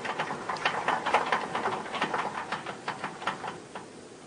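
A steel four-post server rack on casters being moved into place by hand, with irregular clicks, rattles and shuffling footsteps that die down near the end.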